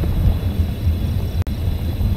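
Wind buffeting the microphone of a handlebar-mounted camera on a moving bicycle: a steady low rumble, with a momentary dropout about one and a half seconds in.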